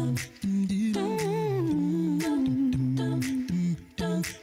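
A cappella vocal group humming held harmonies over a low sung bass line, with beatboxed percussion hits.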